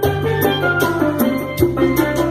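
Live reggae played on a tenor steel pan, with electric guitar and congas. The pan plays the tune in quick struck notes over a steady beat.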